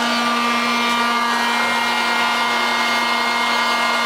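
Popcorn vending machine running mid-cycle, with a steady, even motor and fan hum.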